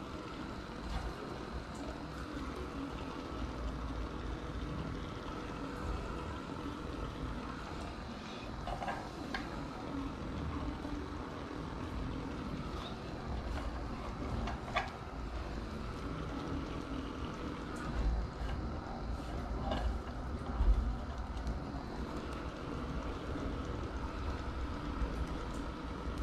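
Fish moqueca simmering in a clay pot on a gas burner: a steady, low bubbling hiss, with a few faint taps as onion, tomato and pepper slices are laid in.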